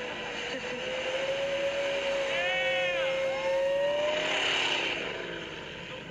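Hummer H2's V8 engine held at high revs as it ploughs through deep snow, a steady drone that climbs slowly and falls away after about four and a half seconds. A brief rising-and-falling whine sits over it about two and a half seconds in.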